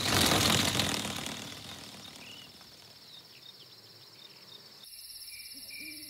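A loud burst of noise at the start fades away over about two seconds. Then crickets chirp steadily, and from about five seconds in a night backdrop of crickets with an owl hooting takes over.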